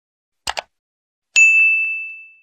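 Sound effects for an animated subscribe button: a quick double mouse click, then about a second later a single bright bell ding that rings on and fades away, the chime marking the bell notification.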